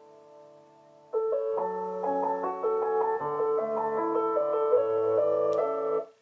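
Piano music: a held chord fades out, then a new phrase of notes starts about a second in and plays on until it cuts off suddenly at the end.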